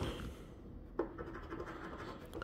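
Faint scraping of a metal scratcher coin rubbing the coating off a paper scratch-off lottery ticket, with a single sharp click about a second in.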